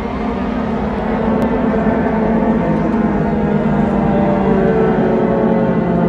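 A metal band's live song intro through a festival PA: a low, sustained drone that swells louder over the first couple of seconds.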